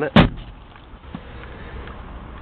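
A single sharp clunk as the van's folding passenger seat backrest drops into place, followed by faint low cabin rumble.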